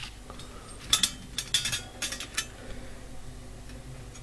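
Light metallic clicks and scrapes of multimeter test-probe tips being set against the terminals of a dishwasher heating element, several close together between about one and two and a half seconds in.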